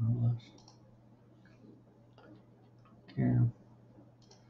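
A few faint, scattered clicks from a computer keyboard and mouse.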